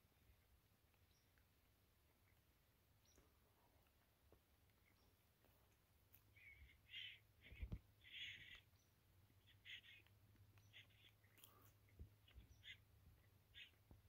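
Near silence, then from about halfway a string of faint, short bird calls, with one soft low bump in the middle.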